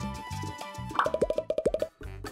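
Light background music, then about a second in a quick run of about ten short popping plops, the popping of pop-it silicone bubbles given as a comic sound effect.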